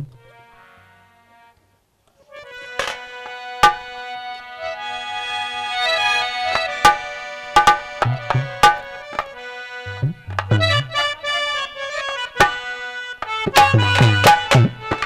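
A harmonium plays sustained reed chords as the instrumental opening to a song, with hand-drum strokes and low thumps. A faint held chord and a short pause come first; the harmonium comes in fully about two seconds in, and the drumming grows busier near the end.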